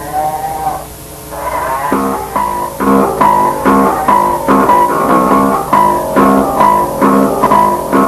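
Lo-fi noisecore recording of a guitar: a brief sliding note at the start, then from about two seconds in one chord struck over and over, a little more than twice a second.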